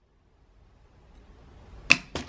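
A faint whoosh that swells over about a second and a half and ends in a short, sharp click.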